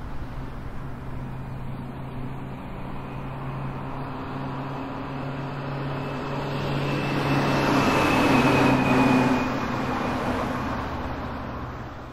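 Mouth-made imitation of street traffic: a steady low hum under a rushing noise that swells like a passing vehicle, peaking about eight seconds in and then easing off.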